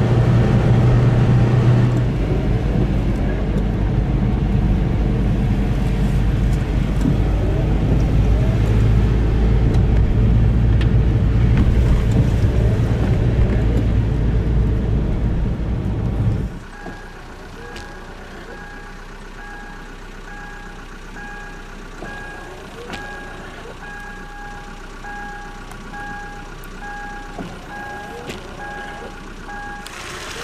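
Car engine and road noise heard from inside the moving car, a steady low drone. About halfway through the sound drops suddenly to a quieter scene with a beep repeating at an even pace until the end.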